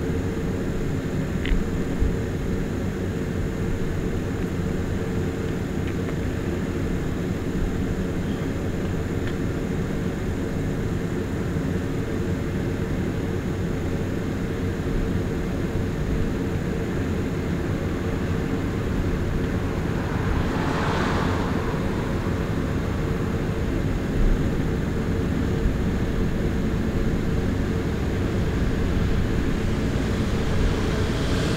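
Steady low hum of an idling fire engine's motor, unchanging throughout, with a brief swell of hiss about two-thirds of the way through.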